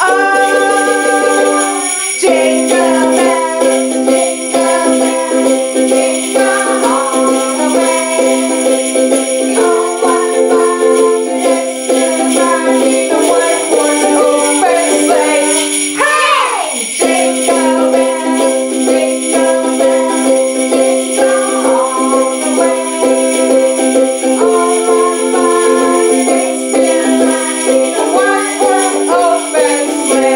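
Small handheld jingle bells shaken steadily by children, over Christmas music with sustained notes.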